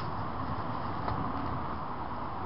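Steady low rumbling outdoor background noise with no clear source, with one faint click about a second in.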